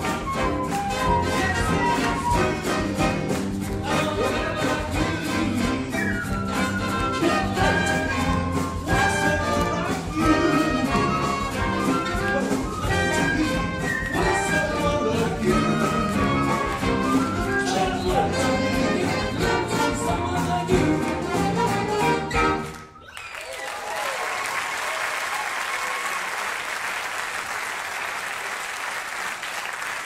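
Jazz big band with flute, saxophones, brass, piano, bass, guitar, drums and percussion playing a swing number live. The music stops suddenly about 23 seconds in, and an audience applauds steadily after it.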